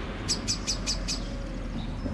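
Common blackbird's alarm call: five sharp, high notes in rapid succession, each dropping in pitch, within the first second. The uploader takes it to be an alarm at a person's presence.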